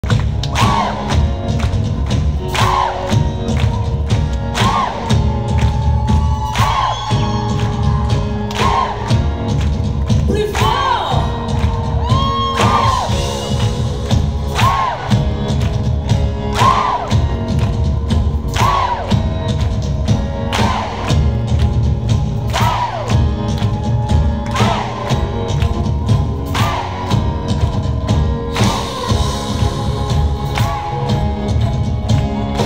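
Amplified live concert music heard from the audience: a song's instrumental intro with heavy bass and a steady beat, and a short swooping note repeating about every two seconds, with crowd noise and cheers mixed in.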